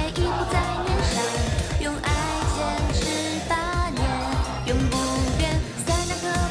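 Idol-pop song performed on stage: female singing over a steady dance beat.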